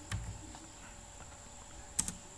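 A few computer keyboard key presses: one soft click just after the start and a sharper double click near the end, over a faint steady electrical hum and a thin high whine.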